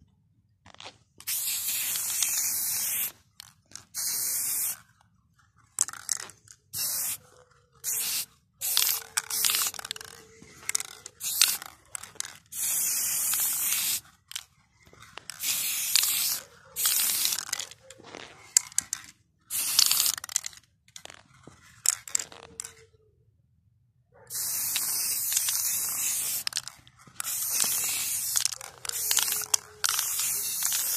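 Aerosol spray-paint can spraying in a series of hissing bursts, some short and some lasting a couple of seconds, with brief silent gaps between strokes as letters are painted.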